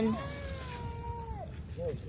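A high-pitched voice holds one long note for about a second, then drops off, with speech starting again near the end.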